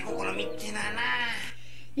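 A cartoon character speaking Japanese in a drawn-out, sing-song voice. It stops about one and a half seconds in.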